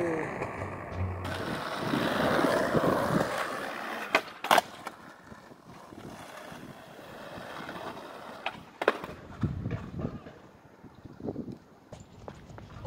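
Skateboard wheels rolling on concrete, with sharp clacks of the board about four seconds in and again near nine seconds.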